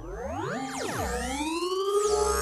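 Synthesized transition sound effect: an electronic tone sweeps steeply up in pitch, drops sharply about a second in, then glides back up and levels off into a steady tone.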